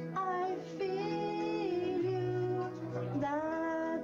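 A man singing karaoke into a microphone over a backing track, holding long notes with a wavering pitch across several sung phrases.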